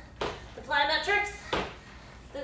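A woman's voice between jumps, with two thumps of sneakered feet landing on a wooden floor, about a second and a half apart.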